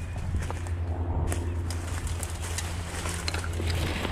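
Footsteps crunching through dry fallen leaves and cut brush, with scattered light cracks of twigs, over a steady low rumble.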